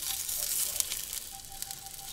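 Sausage links sizzling and crackling in a nonstick frying pan as a spatula turns them, louder in the first second and then easing.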